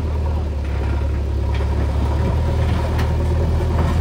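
Diesel engine of a backhoe loader running steadily, a deep continuous hum.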